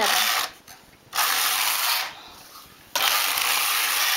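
Carriage of a domestic flatbed knitting machine sliding across the needle bed, knitting two rows: a short burst at the very start, then two passes of about a second each with brief pauses between them.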